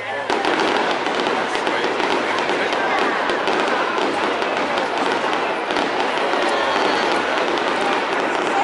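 Aerial fireworks going off, a steady run of sharp cracks and crackles, over the chatter of a watching crowd.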